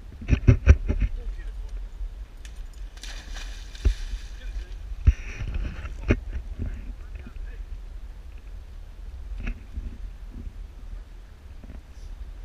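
A cluster of sharp knocks near the start, then splashes about three and five seconds in as a thrown coconut and a pit bull land in lake water, and then the dog swimming, under a steady low rumble.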